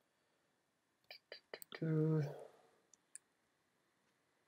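Several computer mouse clicks: about four in quick succession a second in, then two more near the end. Between them comes a short hummed "hmm" from a man's voice, the loudest sound here.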